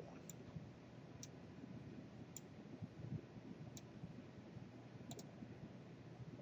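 Five or six faint, sharp clicks spaced a second or so apart, over low steady room hiss: a computer mouse clicking.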